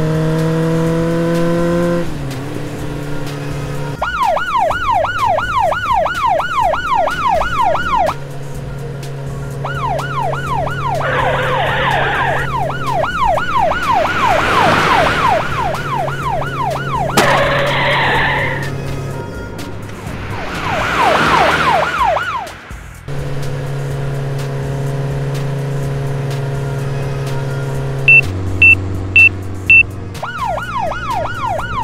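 Cartoon sound effects of a police car chase. A police siren wails up and down over a steady engine hum, with tyre skids around the middle. Four quick beeps come near the end, a low-fuel warning.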